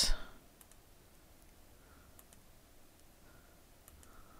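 Faint computer mouse clicks, about half a dozen scattered over a few seconds, some in quick pairs.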